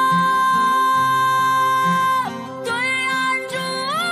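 Female solo voice singing a Chinese love song over instrumental accompaniment. She holds one long high note until about two seconds in, then starts the next phrase with an upward slide in pitch.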